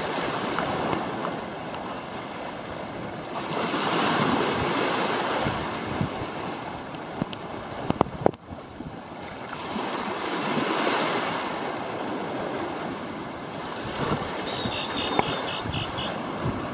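Sea waves washing in, the noise swelling and fading in slow surges about six seconds apart, with a few sharp knocks about halfway through.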